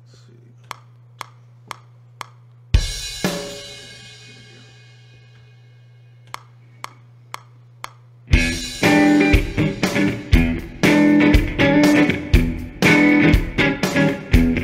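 Four sharp clicks half a second apart over a steady electric hum, then one loud hit that rings and fades over several seconds, then four more clicks like a count-in. A little past eight seconds in, a drum beat with electric guitar starts.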